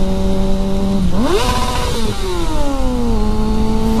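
Kawasaki Ninja motorcycle engine cruising at a steady pitch. About a second in it revs up sharply under a burst of throttle, holds briefly, then winds down over about a second and settles at a steady, slightly higher pitch. Wind rushes on the microphone throughout and grows louder during the burst.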